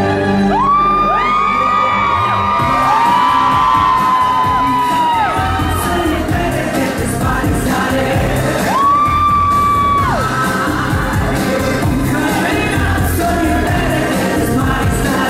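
Loud pop music over a hall PA. Several audience members scream and whoop in long, high, held cries that overlap through the first few seconds, and one more rings out about nine seconds in.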